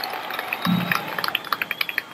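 High school marching band playing: a run of sharp percussion taps, several a second, with a short low note about two-thirds of a second in.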